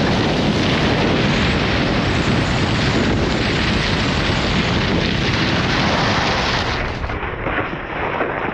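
Loud, steady wind rush buffeting a camera microphone moving fast down a ski slope, easing slightly and thinning out about seven seconds in.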